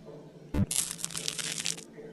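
Crunchy, crackling ASMR cutting sound effect for a scalpel slicing through a cluster of bumpy growths: a click about half a second in, then about a second of dense crackling.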